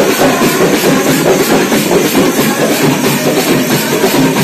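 Hand-held folk drums playing together in a fast, dense beat, with a constant bright rattle above the drumming.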